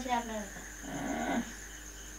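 Crickets chirping steadily in the background under the end of a spoken phrase, with a short rough vocal sound about a second in.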